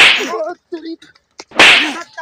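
Two loud, sharp hits from blows in a play fight, one at the start and one about a second and a half later, each with a short swishing tail.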